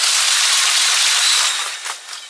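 Regional electric multiple-unit train passing close by: a loud, steady rushing hiss of wheels on rail and moving air that fades away about a second and a half in.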